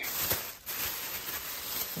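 Thin plastic grocery bags rustling and crinkling as they are handled, with a short pause about half a second in.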